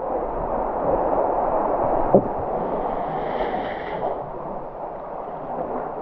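Seawater sloshing and lapping in a shallow sea cave, close to the microphone, with one short knock about two seconds in.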